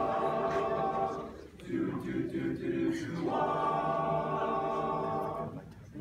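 Unaccompanied choir of teenage boys singing held chords, with brief breaks about a second and a half in and again just before the end.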